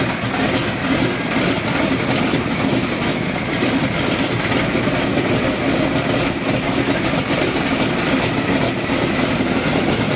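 A B-17 bomber's Wright R-1820 Cyclone nine-cylinder radial engines idling, a steady, loud propeller-engine drone.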